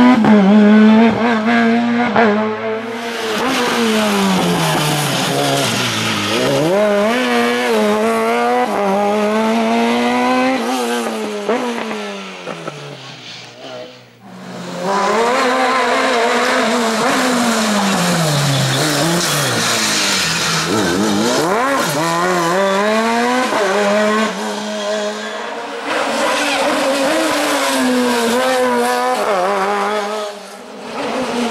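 Sport-prototype race car's engine at full throttle on a hill climb, its pitch climbing as it revs up through the gears and dropping on the brakes into each bend, again and again. The sound dies away about halfway through, then comes back loud as the car comes close again.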